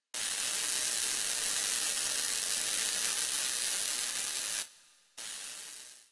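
A steady hiss, like static or sizzling, that starts suddenly and cuts off suddenly after about four and a half seconds, followed by a shorter, fainter hiss near the end.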